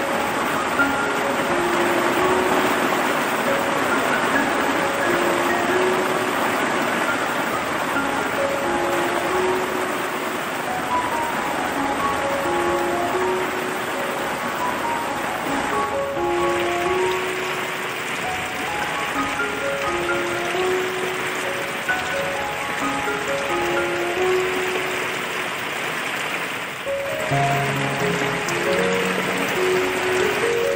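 Steady rain falling on puddled ground, under background music: a slow melody of single notes, with lower notes joining near the end.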